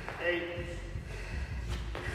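A burpee box jump-over in progress: a short voice-like sound from the athlete about a quarter second in, then a single thud near the end as she drops to the rubber gym floor for the next burpee.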